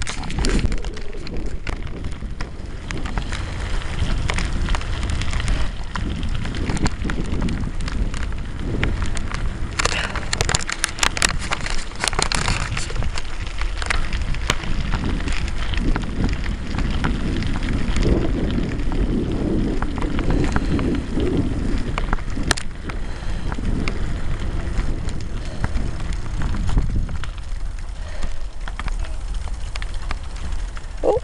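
Wind and handling noise on the microphone of a handheld camera carried by a moving cyclist: a steady low rumble with crackle. A cluster of sharp clicks comes about a third of the way through.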